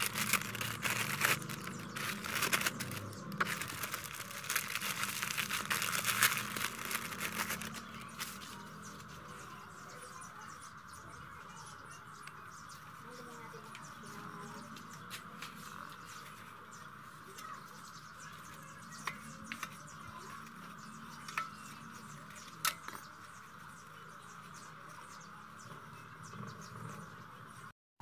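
Plastic packet crinkling and steel wool rustling as it is handled, dense for the first eight seconds. It then gives way to a faint steady hiss with a few sharp clicks as the steel wool is pressed into the motorcycle muffler's outlet.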